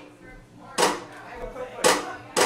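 A drummer's count-in: sharp stick clicks about a second apart, two of them in this stretch, marking the tempo before the band starts.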